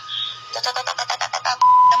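A loud steady beep of one pitch near the end, the kind of tone used to bleep out a word, preceded by a quick run of short, evenly repeated pulses, about a dozen a second.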